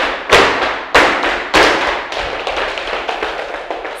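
A group of dancers stamping in flamenco shoes on a wooden studio floor, doing zapateado footwork in time. Three strong stamps come roughly two-thirds of a second apart in the first two seconds, then softer, quicker foot taps follow.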